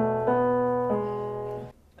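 A keyboard playing a short melody in one key, a melody that is about to be transposed to another key. It plays a few held notes, the pitch changing about a quarter second in and again about a second in, and it stops shortly before the end.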